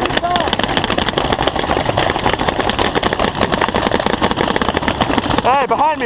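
Paintball markers firing rapidly, a dense, continuous string of sharp pops from many guns at once.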